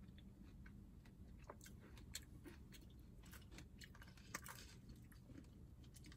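Faint close-up chewing of a mouthful of açaí bowl, with scattered small wet mouth clicks.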